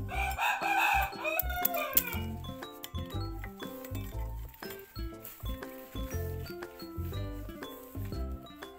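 A rooster crows once, a single long call of about two seconds at the start that drops in pitch at the end. Background music with a steady beat plays throughout.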